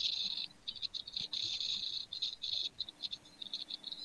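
Irregular bursts of high-pitched chirping from a small animal, starting and stopping every fraction of a second.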